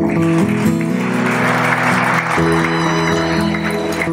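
Audience applauding over acoustic guitar music. The applause stops near the end while the guitar plays on.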